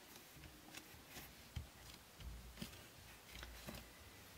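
Faint handling of cardstock: hands pressing a freshly glued paper panel flat onto a card base, with scattered light taps and soft paper rustles, the sharpest tap a little after one and a half seconds in.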